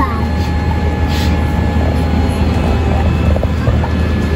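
Airliner cabin noise: a steady low drone that holds at an even level throughout.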